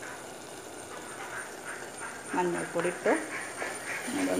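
Faint scraping of a wooden spatula stirring spice powder into a steel pot of tomato masala. Halfway through, a voice speaks briefly.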